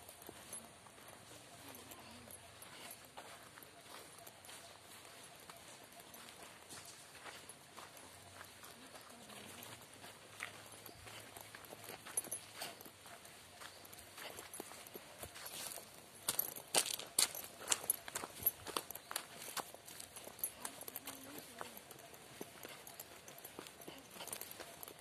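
Footsteps crunching along a dirt path strewn with dry leaves, as a series of irregular short clicks. A run of louder, sharper steps comes a little past the middle.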